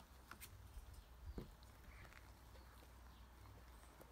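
Near silence with faint sounds of a litter of puppies playing: a few light clicks and small squeaks, and one soft thump about a second and a half in.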